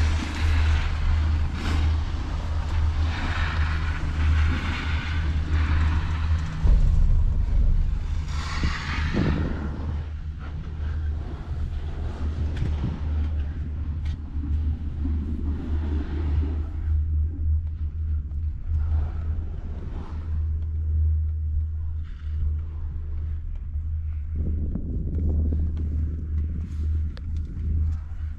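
Steady low rumble of wind buffeting the microphone on a moving six-seat chairlift, with a brief louder rush about nine seconds in.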